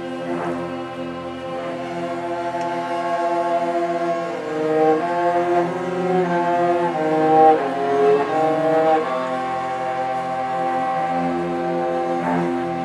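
Student string orchestra playing a film-music piece: held chords, with a melody moving above them in the middle that grows loudest about seven seconds in.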